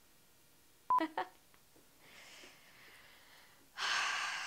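A short, single-pitched electronic beep about a second in, with a brief voice sound right after it. Faint breathing follows, then a loud breathy exhale near the end.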